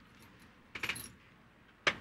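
Brief jingling metallic rattle about three-quarters of a second in, then one sharp click near the end, as a seated man shifts and sits back on a metal-framed swivel chair.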